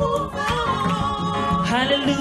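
Mixed-voice gospel choir singing, the voices holding a long note and then sliding upward near the end.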